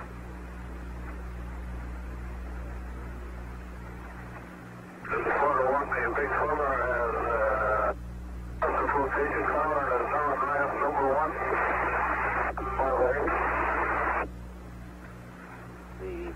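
A man's voice over a narrowband two-way radio link, too garbled to make out. It starts about five seconds in, breaks off briefly twice and stops a couple of seconds before the end, over a steady radio hiss and a low buzzing hum.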